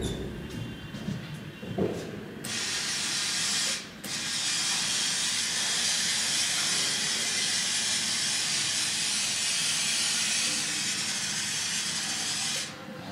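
COLO-800D-06C lab electrostatic powder coating cup gun spraying powder: after some handling knocks, a steady hiss of compressed air and powder starts abruptly about two and a half seconds in, with a brief break near four seconds where the trigger is let go and pulled again.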